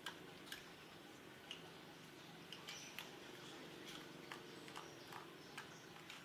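Near silence: faint ambience with about a dozen short, sharp clicks scattered irregularly, a few of them with brief high chirps.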